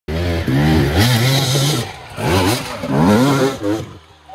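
Enduro dirt bike engine revving in bursts, its pitch climbing and dropping: one long rev over the first two seconds, then two shorter ones.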